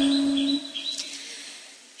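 The last sung note of a chanted verse fades out in the first half second, over three or four short, high chirps like a small bird's. After that the sound dies down.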